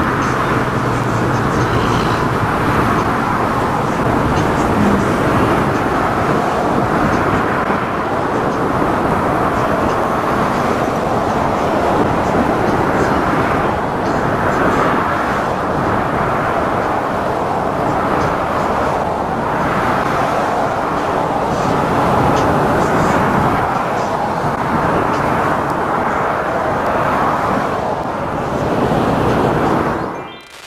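Loud, steady outdoor background noise with indistinct voices mixed in.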